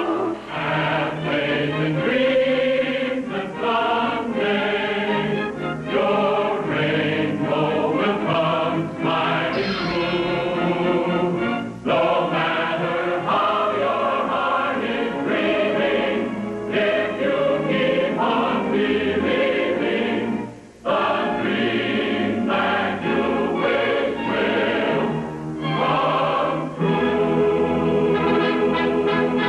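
Film-score music: a choir singing over an orchestra, with a sudden change about twelve seconds in and a brief drop in level about two-thirds through.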